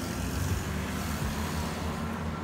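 Steady road traffic noise: an even rushing sound of passing vehicles.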